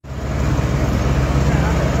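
Steady low rumble of heavy vehicle engines and road traffic.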